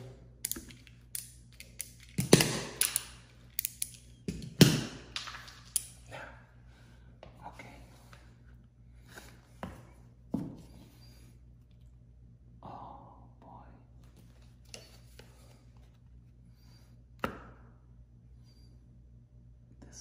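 A run of sharp clicks and snaps from a utility knife being readied with a fresh blade during the first six seconds, the loudest two about two seconds apart. Then scattered faint ticks and one sharp tap near the end as the blade works at a wallcovering seam.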